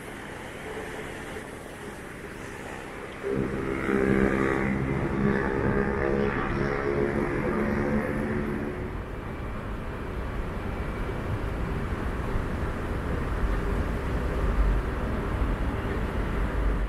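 Road traffic: the steady hum of vehicles on the street. About three seconds in the level jumps up and an engine drone is heard over it, fading out about halfway through.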